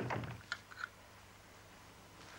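A soft thump at the very start, then a few light, sharp clicks within the first second, as of small objects being handled in the hands. Then only quiet room tone.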